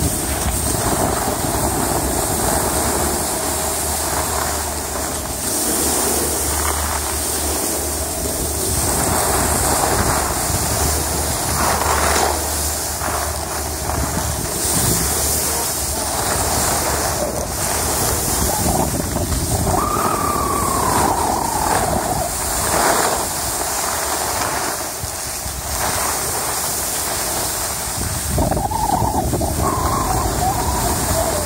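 Wind buffeting the microphone while skiing downhill, mixed with skis scraping over packed snow. A faint wavering tone comes through about two-thirds in and again near the end.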